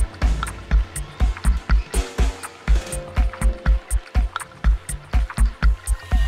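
Minimal techno playing through a DJ mixer: a steady four-on-the-floor kick drum about two beats a second, with hi-hat ticks between the kicks and a sparse synth line.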